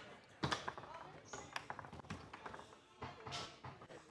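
Foosball game in play: the ball is struck and knocked about by the men on the rods. There is a sharp clack about half a second in, then a run of lighter clicks and taps.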